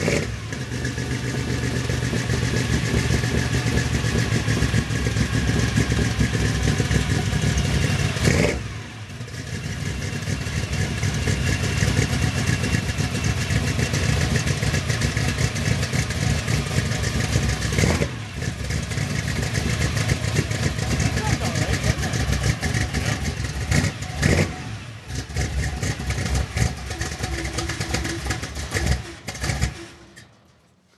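Ford 429 V8 in a 1951 Ford F-1 pickup running, newly got running, with the throttle worked. Its sound drops briefly about 8, 18 and 25 seconds in and cuts off at the end as the engine is shut down.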